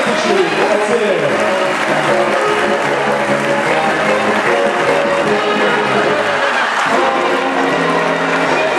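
Audience applauding over music in a circus tent, with a few voices mixed in.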